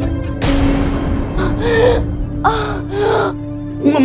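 A woman gasping and whimpering in distress: a sharp breathy rush, then three short crying sounds whose pitch bends and falls, over sustained dramatic background music.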